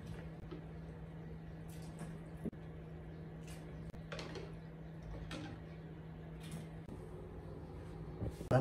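Faint water sloshing and splashing as blanched pig trotters are lifted out of the pot with a wire skimmer and dropped into a bowl of rinsing water, a few soft splashes over a steady low hum.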